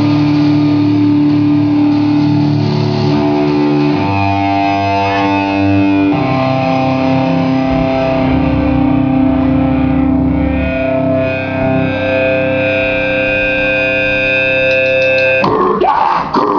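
A hardcore band playing live at full volume: distorted electric guitar holding slow, sustained chords that change every couple of seconds. A burst of louder, noisier playing starts just before the end.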